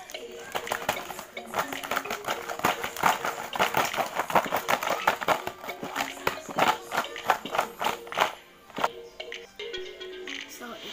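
Fried cheese lumpia sticks rattling and knocking in a plastic tub as it is worked or shaken to coat them in cheese powder: many quick, irregular clicks, thinning out near the end. Background music plays throughout.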